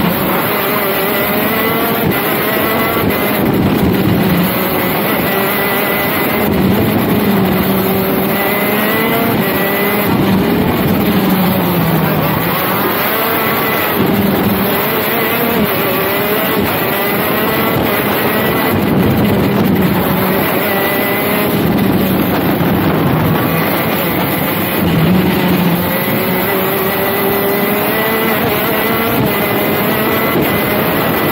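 KZ shifter kart's 125 cc two-stroke engine at racing speed, its pitch climbing and falling over and over as it accelerates along the straights and slows for corners.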